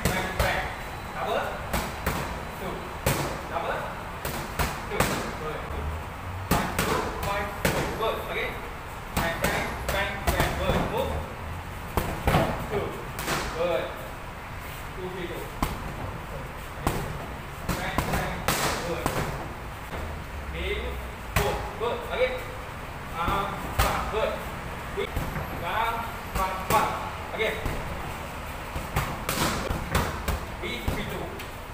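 Boxing gloves smacking against focus mitts in quick combinations, sharp slaps that come in irregular bursts of two to four hits with short gaps between.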